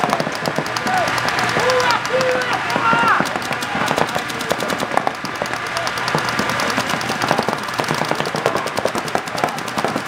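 Paintball markers firing in rapid, steady streams of shots, many a second, with overlapping guns going through the whole stretch.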